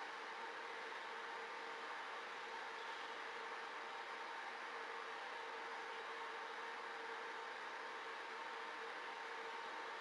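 Steady hiss with a faint, constant hum: the background noise of a zoo webcam's microphone. The wrestling pandas make no distinct sound.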